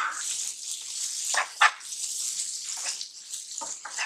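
Onion-tomato masala sizzling in oil in a pan as a spatula stirs it, with a few quick scraping strokes of the spatula against the pan.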